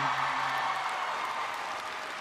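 Audience applauding, the applause slowly dying down, with a man's drawn-out 'um' over the first second.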